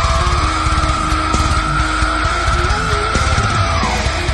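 Slam metal with rapid, heavy drum hits and a low guitar riff under a long high squealing note. The note glides up slightly, holds, and drops away just before the end.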